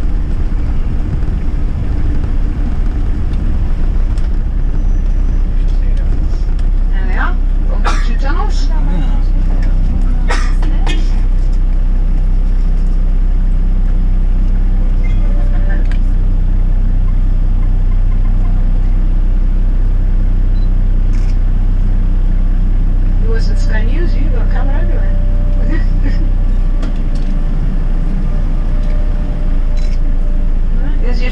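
Minibus engine and road noise heard from inside the cabin: a steady low rumble while the bus drives down a steep, narrow road.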